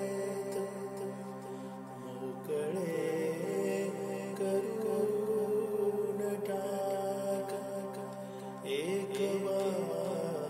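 Indian semi-classical vocal music in the Marathi bhavgeet style: a voice sings a slow, wavering melodic line over a steady drone, with a rising glide near the end.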